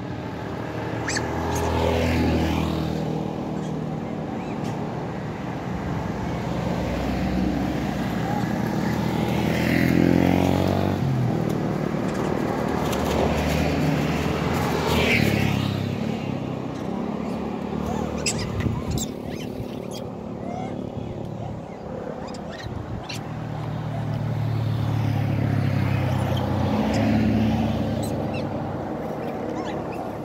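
Several motorcycles passing one after another on the road, each engine growing louder and then fading as it goes by.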